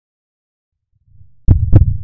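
Silence for about a second, then a faint low swell, then a loud heartbeat sound effect about a second and a half in: one deep double thump, lub-dub, the two beats about a quarter-second apart.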